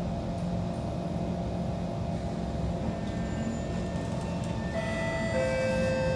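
Kawasaki C151 metro train at a standstill with a steady low hum through the car. From about three seconds in, its traction equipment sets up several steady electric tones that grow stronger near the end as the train starts to pull away.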